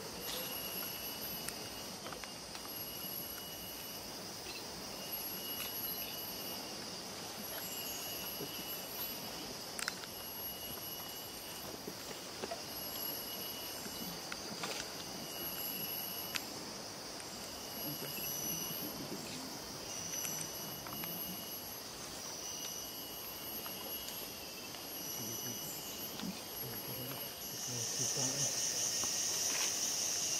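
Tropical rainforest insect chorus: a constant high buzz with repeating high-pitched trills, each about a second long with short gaps between. A single sharp click sounds about ten seconds in.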